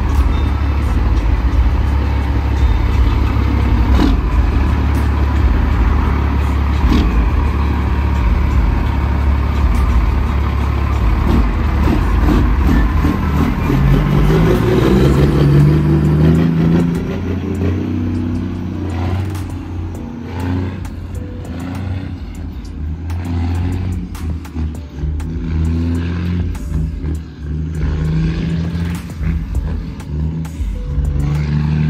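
Caterpillar 3406E diesel of a Peterbilt 379 idling with a steady low rumble. From about halfway, background music with a stepping bass line and a beat comes in and takes over.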